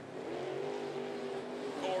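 Limited late model dirt-track race cars' V8 engines running at speed, a steady engine note that rises slightly in pitch. The announcer's voice comes in near the end.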